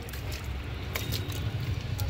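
Water poured from a plastic bottle, splashing steadily down a PVC pipe and onto the concrete below as the pipe is rinsed, with a low rumble underneath.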